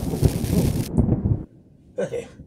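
Thunder-and-lightning sound effect: a crackling, rumbling thunderclap that cuts off about a second and a half in.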